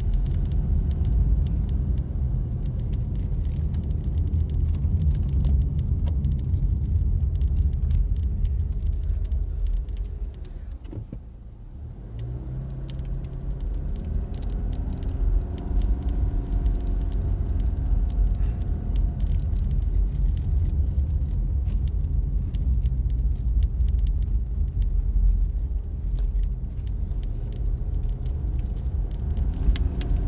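Car driving on a snow-packed road, heard from inside the cabin: a steady low rumble of engine and tyres. It dips about ten seconds in as the car slows, then the engine note rises as it picks up speed again.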